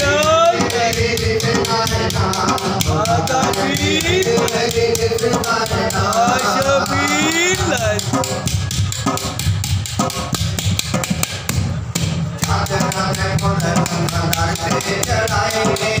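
A man singing a devotional kalam into a microphone, accompanied by a steady rhythm beaten by hand on a drum. The singing drops out for a few seconds around the middle while the drum keeps going, then comes back.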